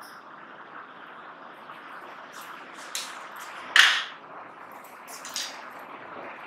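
Steady room hiss with a few short clicks and knocks. The loudest knock comes about four seconds in.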